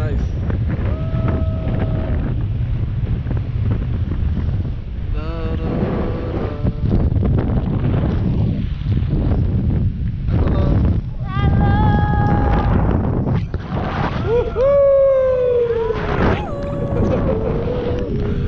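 Wind buffeting the harness-mounted camera's microphone high up on a parasail flight: a loud, steady low rumble. Voices break through over it a few times.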